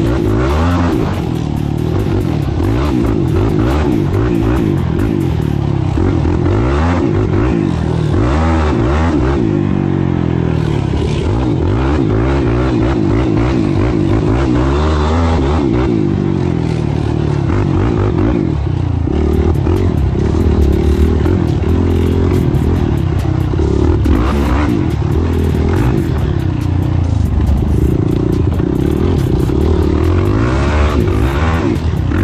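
Yamaha sport ATV engine ridden hard on sand, revving up and easing off again and again with the throttle.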